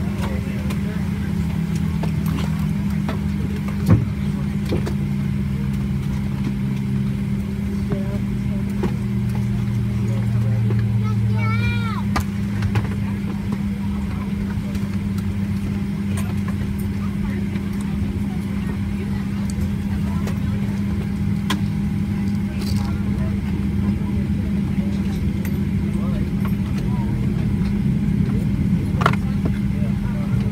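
Steady low drone inside the cabin of a Boeing 737-700 parked at the gate, with indistinct passenger chatter. A single knock comes about four seconds in and a brief high warbling chirp near the middle.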